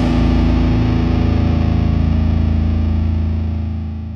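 Distorted electric guitar and bass holding one last chord, ringing with no new notes struck and fading away near the end.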